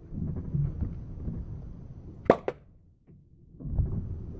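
A toy cork gun firing a cork: a sharp pop a little past halfway through, followed a fraction of a second later by a second sharp click. Low rumble of handling comes before it, and a dull thump near the end.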